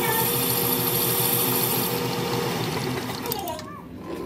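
Metal lathe running with a boring tool cutting the bore of a new brass bush inside an air compressor crankcase, a steady machine noise with a fast even clatter. The high cutting hiss stops about two seconds in, and the lathe winds down near the end.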